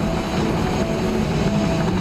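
Steady road and engine noise of a car driving, mixed with held musical tones that step slowly between pitches.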